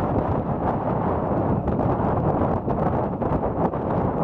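Strong wind buffeting the microphone in a steady rumble, with the receding steam locomotive 46115 Scots Guardsman and its train working uphill into a head wind beneath it.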